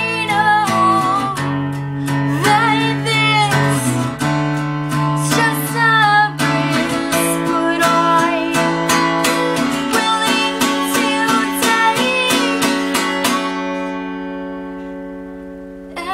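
A woman singing while strumming an acoustic guitar. Near the end the singing and strumming stop and a last chord is left ringing, fading away.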